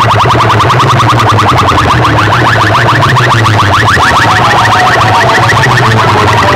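Very loud electronic siren-like effect blasting from a stack of horn loudspeakers in a DJ sound-box competition: a rapid train of short rising chirps that climbs slowly in pitch, over a steady deep bass tone.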